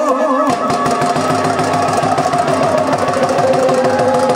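Live bhangra folk music for a dance performance. About half a second in, a wavering melody gives way to a fast, even beat, with held melody notes above it.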